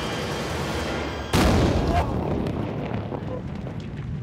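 A large explosive charge detonates about a second in: a sudden, very loud bang that rumbles and dies away over the next couple of seconds.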